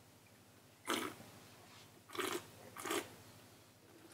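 A wine taster sipping wine and slurping it in the mouth, drawing air through it to aerate it: three short, wet slurps, the first about a second in and two more close together near three seconds.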